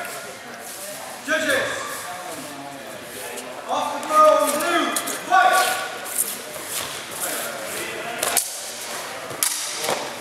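Spectators' voices calling out in short bursts, echoing in a large sports hall, with a few short knocks in between.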